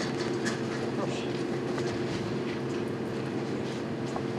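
Steady hum of several low tones held together, with a few faint taps and rustles over it.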